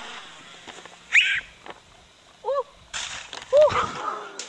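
Short wordless vocal cries, each rising then falling in pitch: a high one about a second in and two lower ones near the middle and end, with a brief rush of noise around three seconds in.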